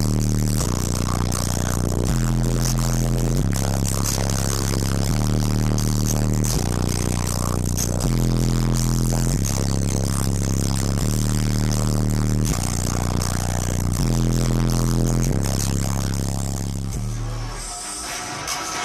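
Bass-heavy music played loud through a car audio system of twelve 12-inch subwoofers in a fourth-order bandpass enclosure. Long, deep bass notes step to a new pitch every second or so, and the sound drops off near the end.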